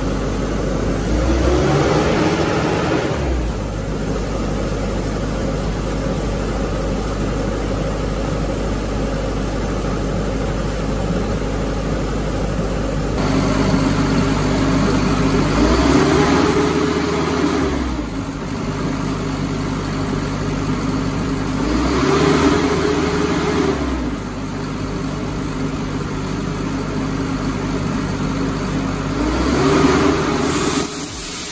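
Diesel engine of an Atlas Copco portable screw compressor running steadily. Four times it revs up and drops back over about two seconds as load is selected. It says loaded but the compressor is not actually loading, which the owner traces to the unloader solenoid valve's coil sliding forward.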